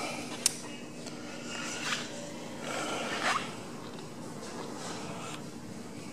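A single sharp click about half a second in, then soft rustling and shuffling as a person moves with a handheld camera, over a steady faint hum.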